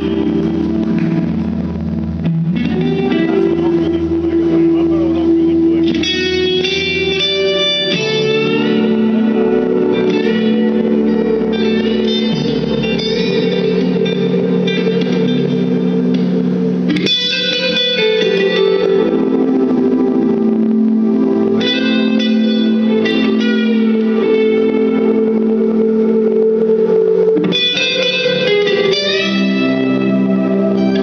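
Live rock band playing: electric guitars run through effects over keyboards and bass, loud and reverberant.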